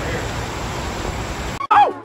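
Steady rushing outdoor noise with a hiss. It cuts off suddenly near the end and gives way to a short tone that falls steeply in pitch.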